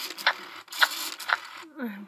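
Run of sharp plastic clicks, about one every half second, as a plastic spoon works in the mechanical mouth of a Baby Alive doll during feeding.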